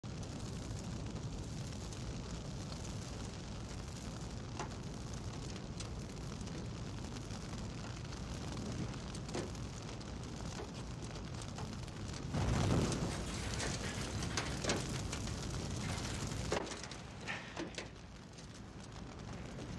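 A car burning: a steady rush of flames with sharp crackles and pops now and then, and a louder surge of fire about two-thirds of the way through.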